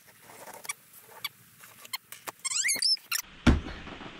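A utility knife slitting packing tape on a large cardboard box: scattered clicks and scrapes, then a squeaky screech rising and falling in pitch about two and a half seconds in. A loud dull thump follows near the end.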